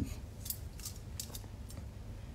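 A few faint, short clicks, irregularly spaced, over a low steady background hum.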